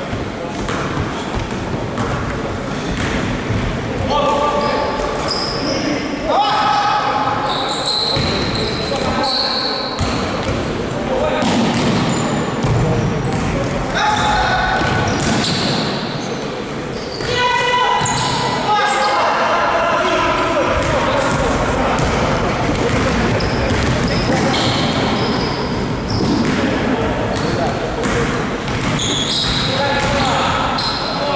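A basketball bouncing on a wooden gym floor during play, with players' shouts and calls echoing in a large sports hall.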